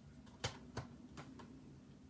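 A few faint, light clicks and taps as small plastic craft supplies are handled on a table, the sharpest about half a second in.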